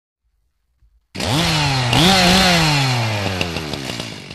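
A two-stroke chainsaw starts about a second in, revs up sharply twice, then its engine note sinks steadily as the throttle is let off.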